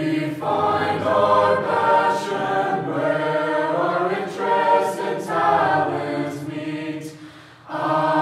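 Mixed chamber choir singing a school alma mater a cappella in four-part harmony, with a short breath pause about seven seconds in before the next phrase.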